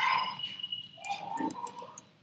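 Computer keyboard typing: light, irregular key clicks as a line of text is typed. A faint, wavering pitched sound runs alongside, loudest near the start.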